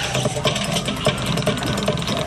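A television playing: a steady, rhythmic machine-like sound with regular ticks about twice a second.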